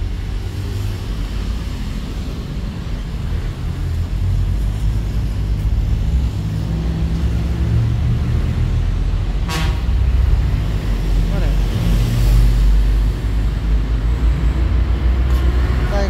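Continuous low rumble, louder in the second half, with one short, high-pitched toot from a vehicle horn about halfway through.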